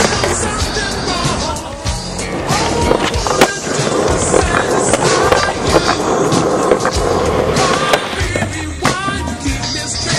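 Skateboard wheels rolling on concrete, with sharp clacks of the board's tail snapping and landing, mixed under music with singing.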